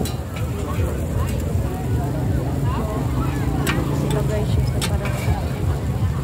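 Indistinct voices and a low steady rumble, with a few sharp clicks of metal spatulas on a griddle in the second half.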